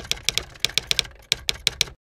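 Typing sound effect: a run of about a dozen sharp key clicks at an uneven pace, in time with text being typed onto the screen, stopping suddenly near the end.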